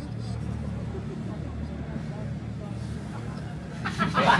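Low murmur of voices over a steady low hum.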